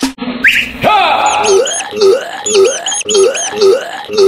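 A cat gagging and retching in repeated heaves, about two a second, as it brings something up. It is led in by a short rising whoop about half a second in.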